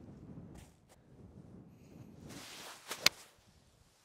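A golf iron is swung off a tee mat: a brief swish, then one sharp click as the club strikes the ball about three seconds in. The strike is a scuffed shot, a "drop kick".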